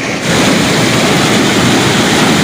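Muddy floodwater rushing and churning through a dam's sluice gate, a loud steady rush of water that grows a little louder just after the start.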